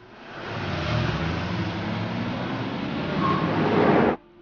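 Several cars and a van driving past on a road: engine and tyre noise that builds as they come nearer, loudest near the end, then cuts off suddenly.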